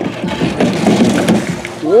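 Plastic wheels of a Step2 toy roller coaster car rolling down its plastic track, a loud irregular clattering rumble as the car runs to the bottom.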